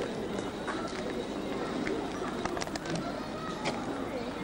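Indistinct chatter of people talking outdoors, with no clear words, over a steady background hiss.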